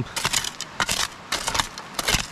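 A shovel digging in a rapid run of short crunching, scraping strokes through earth and leaf litter. The ground is dumped fill that holds old debris.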